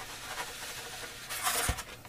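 Carbon arrow shaft spar being pulled through its cored channel in a foamboard wing: soft rubbing and scraping of the shaft against foam and paper, with a louder rustle about one and a half seconds in and a light knock just after.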